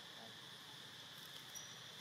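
Faint, steady chorus of insects trilling in the background.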